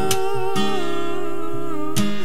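Male voice holding one long sustained note over strummed acoustic guitar, part of an acoustic duet of a pop ballad; a strum lands just after the start and another near the end.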